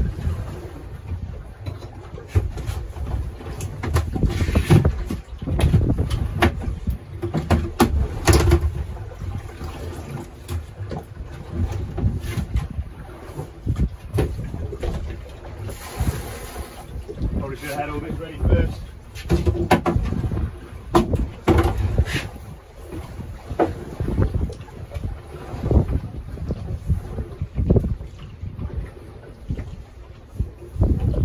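Wind buffeting the microphone on a small open boat, with irregular knocks and clatter as a herring net and gear are handled at the gunwale. About halfway through, water splashes as a cool box is emptied over the side.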